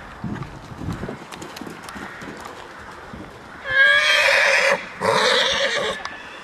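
A horse whinnying loudly, a long call starting a little under four seconds in, with a brief break before a second part near the end. Dull hoofbeats on the arena surface are heard in the first second.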